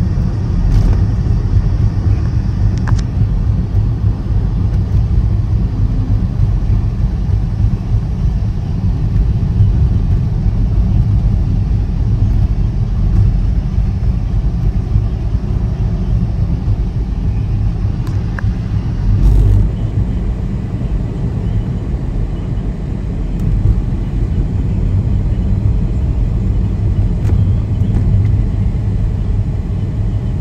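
Steady low rumble of road and engine noise inside a moving car's cabin, with a brief louder swell about two-thirds of the way through.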